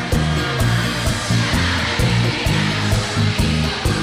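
Live bachata band playing an instrumental passage: a moving bass line, guitar and a steady percussion beat, with no singing, over an even hiss of arena crowd noise.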